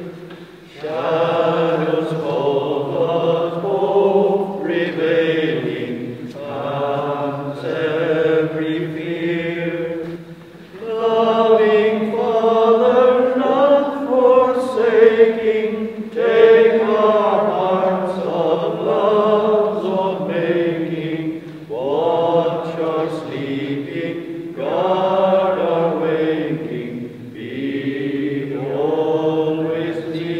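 Voices singing a hymn in unison, in sung phrases a few seconds long with short breaks for breath between them.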